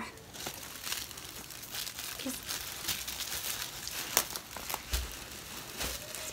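Crinkling and crackling of the wrapping in a new Ugg boot as it is handled and pulled on, with a dull thump near the end.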